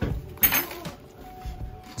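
A crisp crunch about half a second in as teeth bite through pan-toasted bread topped with melted cheese; the crunch is quite good.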